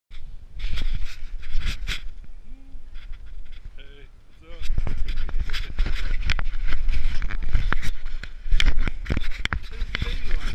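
Wind buffeting the microphone of a handheld camera: a low rumble with crackling gusts. It eases off for a moment and comes back stronger about four and a half seconds in.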